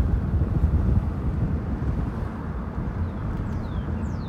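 Car driving slowly along a street, a steady low rumble of engine and road noise with wind buffeting the microphone. Two faint high falling chirps near the end.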